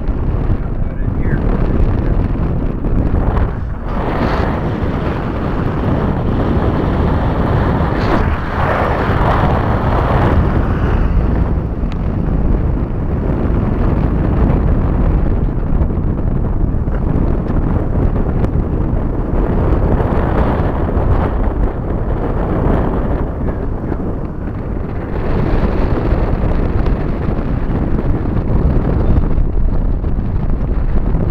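Wind buffeting the microphone through an open car window while driving, with road and engine noise underneath. The noise is loud and steady and heaviest in the low end.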